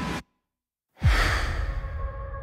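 Trailer sound design: a rising swell cuts off abruptly into dead silence. About a second in comes a loud, deep boom hit, dropping in pitch, with a noisy whoosh on top that slowly fades.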